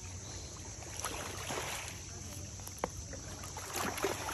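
Steady wash of river water on a stony shore, with a few faint clicks near the end.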